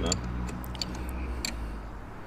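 A few light clicks and taps from hands working on parts around the engine-mounted high-pressure fuel pump, over a low steady hum that fades out about a second and a half in.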